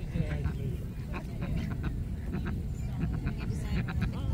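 Indistinct voices of people some way off, with short calls and clicks over a steady low rumble.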